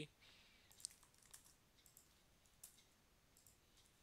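A few faint, isolated computer keyboard clicks over near silence.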